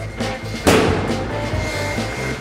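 A single sharp bang about two-thirds of a second in, a rubber party balloon bursting, over background music.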